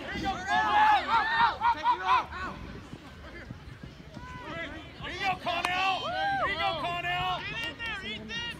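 Several people shouting and yelling over one another, in two loud spells: the first two and a half seconds, and again from about five to seven and a half seconds in.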